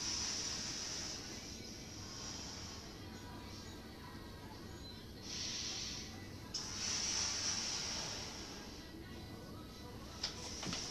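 A person breathing hard through a balloon held in the mouth, during balloon-breathing exercise: a long hissing rush of air at the start, lasting about two and a half seconds, and another starting about five seconds in that runs about three seconds with a brief break.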